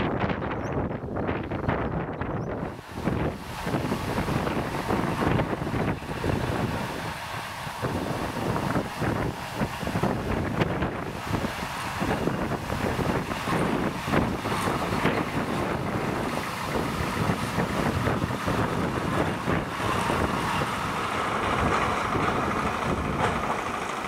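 Small narrow-gauge diesel locomotive running as it hauls a wagon, heard through heavy wind buffeting on the microphone.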